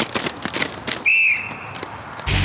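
A single short whistle blast about a second in, over the clatter and knocks of roller skates on the rink.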